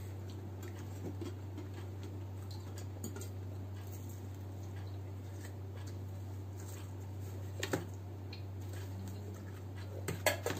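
Quiet pizza eating close to the microphone: faint chewing and small mouth clicks over a steady low hum, with a sharper click about three-quarters of the way through.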